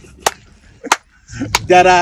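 Several sharp hand claps, about one every two-thirds of a second, with a burst of laughter near the end.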